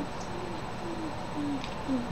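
Soft, low humming: four short notes about half a second apart, each dipping slightly in pitch.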